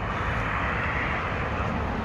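A vehicle passing: steady rushing road noise over a low rumble, swelling and then easing off.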